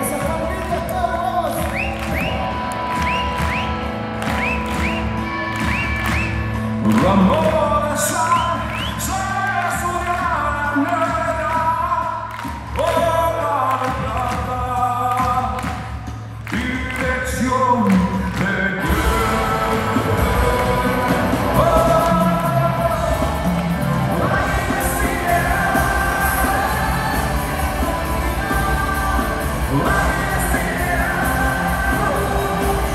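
Live rock band with a lead singer, guitars, bass and drums playing a song. About nineteen seconds in the full band comes in harder and the sound fills out.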